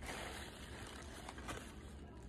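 Faint rustling of white wrapping paper being handled as a bundle is unwrapped, with a couple of light ticks in the second half.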